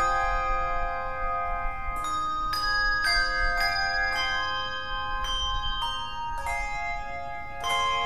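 A handbell choir playing a slow hymn tune: bells struck in single notes and chords about every half second to a second, each ringing on and overlapping the next, with a louder chord near the end.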